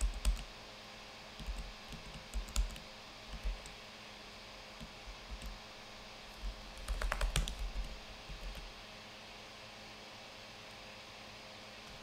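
Computer keyboard typing in short bursts: a few scattered keystrokes in the first three or four seconds, then a quick run of keystrokes about seven seconds in, then quiet.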